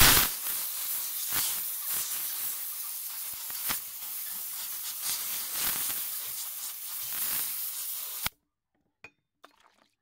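Compressed-air blow gun blasting a steady hiss while blowing out a washed pump barrel and piston rod. It starts abruptly and cuts off suddenly after about eight seconds.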